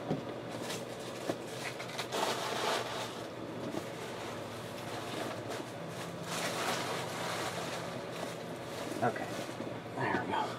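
Low steady room noise with faint, indistinct voices in the background.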